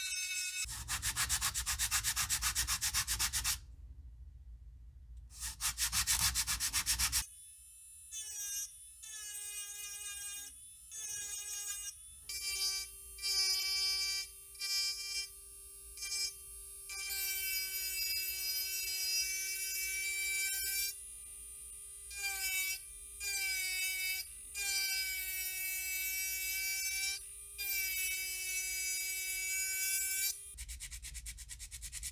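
Pen-style micromotor rotary tool carving and smoothing a small wooden lure body. It opens with a few seconds of rough, rapidly pulsing grinding, then a steady high whine that starts and stops many times in short runs.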